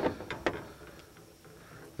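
A few light clicks in the first half second as fishing line is handled at the tip of a cane pole.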